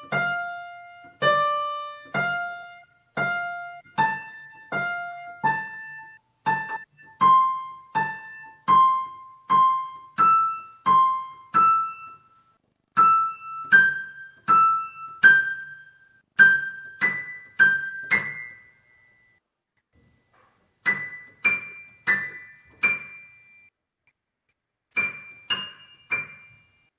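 Piano played one note at a time, about one note a second, each left to ring and fade, in skips of a third climbing up the keyboard: a beginner's slow, careful skipping-note exercise. The notes pause for about two seconds past the middle, then a few more high notes follow.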